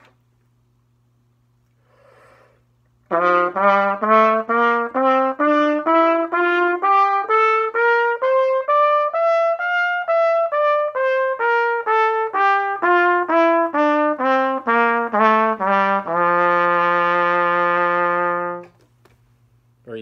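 B-flat trumpet playing a two-octave G major scale (concert F) in eighth notes, climbing evenly and coming back down. It ends on a long-held low note.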